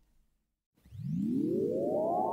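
Silence for almost a second, then a synthesized electronic tone that sweeps steadily upward in pitch from a low hum, a rising transition effect.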